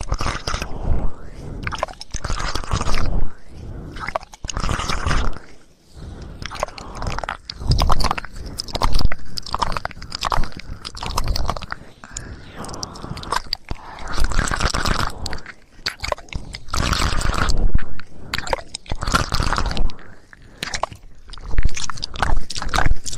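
Close-miked ASMR trigger sounds: a dense, uneven run of small clicks and scratchy, crackly noises with no voice.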